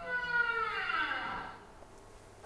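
Recording of a right whale call played over loudspeakers into a room: a single short call with many harmonics, sliding down in pitch and fading after about a second and a half.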